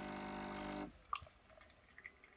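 Coffee machine's pump humming steadily as it dispenses into a glass mug, then cutting off suddenly just under a second in. A sharp click follows, then a few faint ticks.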